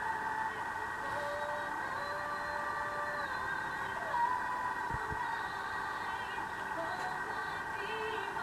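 Faint music and voices with held and gliding notes, as from a television playing a film.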